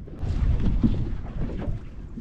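Wind buffeting the microphone on an open fishing boat under way on choppy water, an uneven low rumble that rises and falls.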